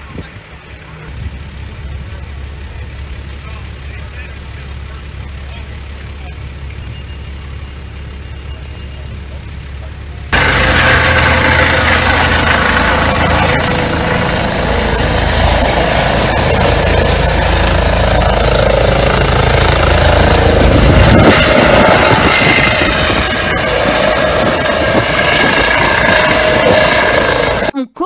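Air-ambulance helicopter running on the ground with its rotors turning, a steady low hum. About ten seconds in, the sound jumps abruptly to a much louder, noisier rotor and turbine sound as the helicopter lifts off, kicking up dust, and it cuts out just before the end.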